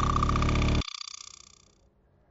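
The closing chord of a TV show's intro music: a sustained chord that cuts off sharply a little under a second in, its high notes ringing on and fading away over the next second.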